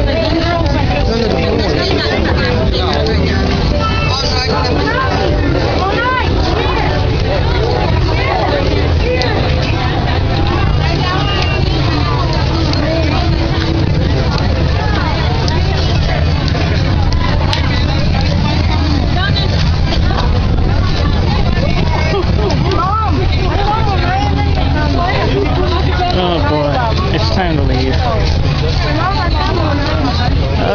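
Crowd chatter: many people talking close by and all around, over a steady low rumble.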